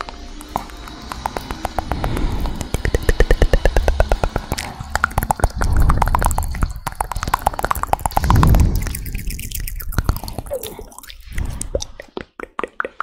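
ASMR mouth sounds made right at a condenser microphone: a fast, dense run of wet clicks and pops, swelling three times with rising-and-falling tones and breathy thumps.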